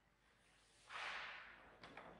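Fabric swish of a cassock as its wearer rises from kneeling, one swish about a second in that fades away, with a light footstep click near the end.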